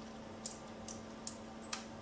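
Faint sharp clicks, about two a second, four in all, over a steady low hum.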